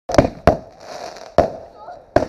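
Aerial firework shells bursting: a quick pair of sharp bangs at the start, another about half a second in and one more near a second and a half, with crackling between them.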